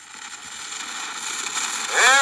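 Surface hiss and crackle of an early-1900s Edison cylinder recording as playback begins, starting suddenly and growing steadily louder.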